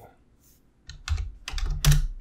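Computer keyboard typing: after a quiet second, a short run of keystrokes, the last ones the loudest.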